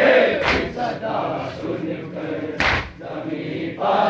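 A crowd of male mourners chanting a noha refrain together, with two sharp slaps about two seconds apart, typical of matam chest-beating.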